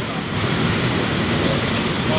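PKP Intercity TLK passenger coaches rolling past a station platform: a steady noise of wheels on rails and running gear.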